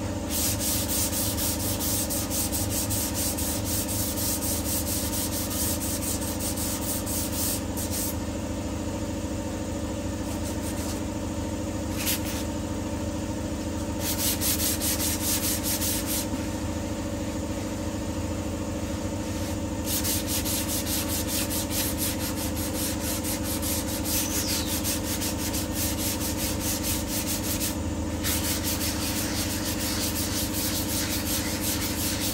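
Hand sanding of body filler on a car's rear quarter panel: sandpaper on a block rubbed rapidly back and forth in long runs, with a few short breaks. A steady low hum runs underneath.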